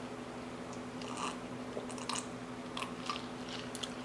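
Close-miked mouth sounds of a person chewing a mouthful of ramen noodles and egg: soft, scattered wet clicks about once or twice a second, over a faint steady low hum.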